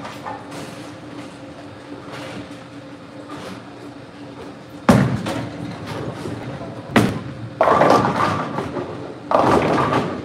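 A bowling ball is released onto the lane with a sharp thud about five seconds in and hits the pins with a sharp crack about two seconds later, followed by two longer bursts of clattering. A steady low hum runs underneath.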